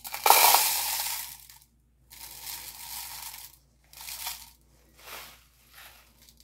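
Crushed glass pouring from a plastic bag into a plastic cup, the pieces clinking and sliding as they fall. It comes in spurts: a loud pour in the first second and a half, a second longer pour, then three short trickles.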